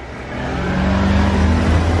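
A motor scooter's engine passing close by in street traffic, growing louder and then holding steady.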